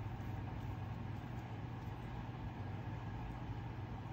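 Steady low background hum with faint even noise, with no distinct knocks or clicks.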